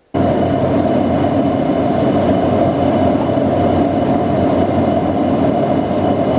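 Steady roar of a jet airliner in flight, heard from inside the passenger cabin: engine and airflow noise with a faint steady hum. It cuts in suddenly right at the start and holds even.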